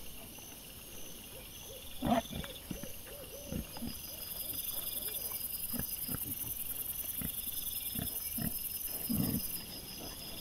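Wild boar piglets grunting and rooting: a run of short low grunts about two to four seconds in, scattered snuffles and knocks after, and a louder grunt near the end. Night insects chirp steadily throughout.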